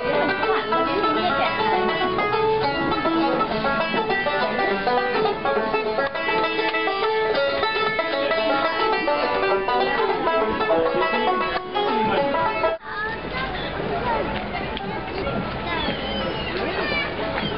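A street musician playing a plucked string instrument in a quick, busy run of notes with a country or bluegrass feel. It cuts off suddenly about thirteen seconds in, leaving outdoor voices.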